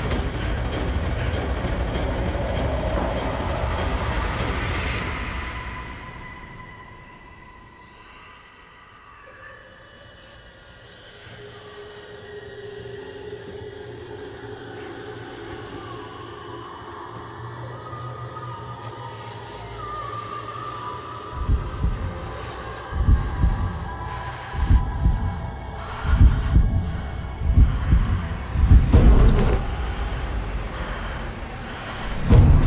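Horror film score. A low rumble fades into quiet held drone tones, then a heartbeat-like double thud begins about two-thirds of the way in and repeats roughly every second and a half, growing louder.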